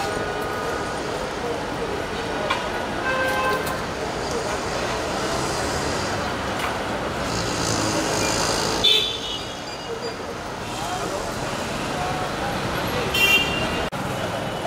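Busy outdoor street ambience: a steady wash of traffic noise with indistinct background voices. Two short horn-like toots stand out, about nine seconds in and again near the end.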